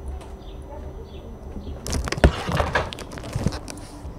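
Handling noise from a camera being picked up and carried: a low rumble, then from about two seconds in a stretch of rustling and clatter with a sharp click.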